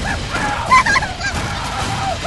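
Cartoon Christmas tree screaming, a wavering cry that rises and falls several times a second, with a sharp hatchet chop into its trunk about three-quarters of a second in.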